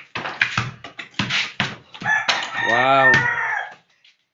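A basketball bouncing a few times on a concrete floor, then a rooster crowing about two seconds in: one long call that rises and falls in pitch, the loudest sound here.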